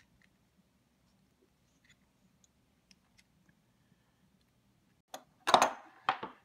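Faint, scattered small clicks of a small screwdriver and the metal parts of a pliers wrench being handled while it is taken apart, then one short, much louder noise about five and a half seconds in.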